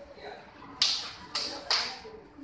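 Three sharp percussive smacks from the martial-arts performer's moves, the first about a second in and the loudest, the next two close together just after. Faint background chatter underneath.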